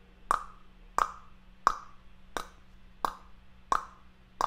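A man clicking his tongue: six sharp pops in a steady rhythm, about one every 0.7 seconds, as part of a tongue-loosening vocal exercise.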